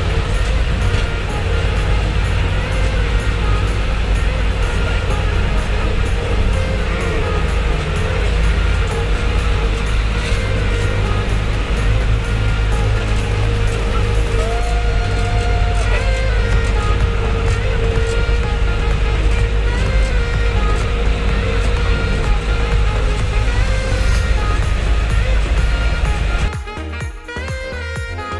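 Tracked snowcat heard from inside its cabin while travelling over snow: a deep, steady rumble with a steady whine running through it.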